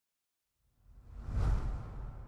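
Logo-animation whoosh sound effect with a deep low end, swelling up out of silence about half a second in, peaking about a second and a half in, then fading away.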